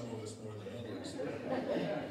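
A man speaking to a gathering; the words are indistinct.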